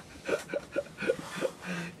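A man laughing softly: a string of short chuckles, about six, spaced roughly a quarter second apart.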